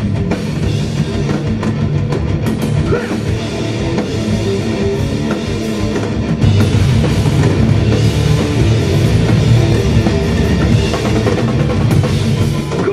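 A heavy rock band playing live, with electric guitars, bass and a driving drum kit. It gets louder about six and a half seconds in.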